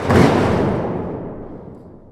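Cinematic transition sound effect: a single deep boom hit that starts suddenly and fades away over about two seconds, the high end dying out first.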